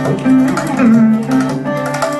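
Chitraveena, a fretless Carnatic lute played with a slide, playing gliding, sliding notes, accompanied by mridangam strokes.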